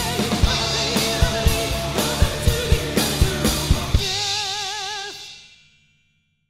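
Acoustic drum kit played along with a rock backing track: steady bass drum and snare hits under cymbals, about four hits a second. About four seconds in, the drums stop on a final accent under a held, wavering note, and the cymbal ring fades out to silence near the end.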